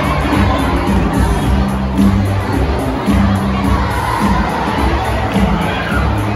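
A crowd of schoolchildren shouting and cheering over loud dance music with a heavy, shifting bass line.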